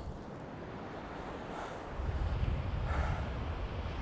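Wind buffeting the microphone over the rush of rough surf breaking on the shore, the gusts growing stronger about halfway through.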